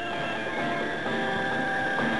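Cartoon soundtrack: a steady drone of several held tones, with one high tone standing out, accompanying a rocket ship in space.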